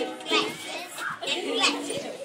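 Several children's voices in short broken snatches of talk and singing.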